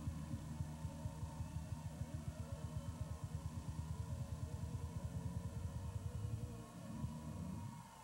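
A low hum with a fast, even throb, several pulses a second, that drops away shortly before the end.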